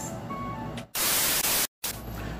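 A loud burst of TV-style static hiss, about two-thirds of a second long, that starts and cuts off abruptly with a moment of dead silence on either side, typical of a glitch transition sound effect. Before it, a few faint short tones over a quiet background.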